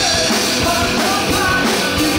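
Live rock band playing loud, with drum kit, electric guitar and a singer singing over them.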